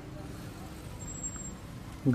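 Faint, steady outdoor street ambience: a low background rumble with no distinct events.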